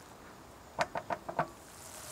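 Red wine and soy sauce reducing in a nonstick frying pan, stirred with a spatula: a faint bubbling hiss, with a quick run of about five small clicks and pops about a second in.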